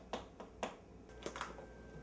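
Wooden spoon knocking against a ceramic mixing bowl in a handful of sharp, irregular clicks as a hard lump of ingredient is broken up.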